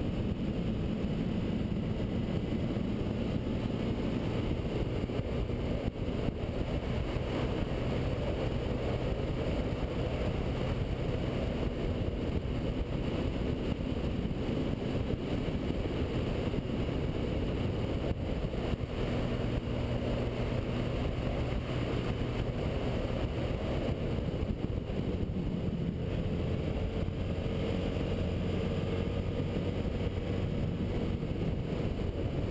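Sport bike engine running at steady riding revs under a dense rush of wind noise. The engine note changes pitch near the end.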